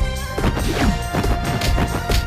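Dramatic background music with fight-scene sound effects: a crash right at the start, then a run of striking and sweeping hits.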